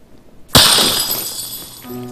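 A glass wine bottle smashing about half a second in: one sudden loud crash, with glass ringing and tinkling away over the next second.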